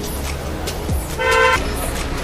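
A vehicle horn sounds once, a short toot of about half a second, a little over a second in, over a low street rumble.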